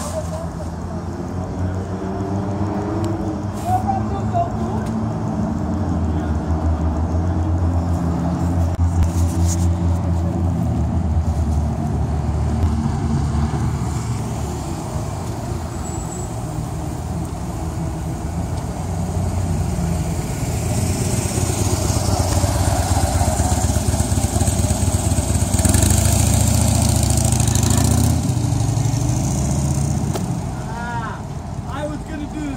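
A car engine running with a steady low hum, heard from inside the car. A rushing noise swells over it in the last third.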